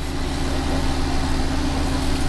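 Car engine idling, heard from inside the cabin: a steady low hum with a steady tone just above it.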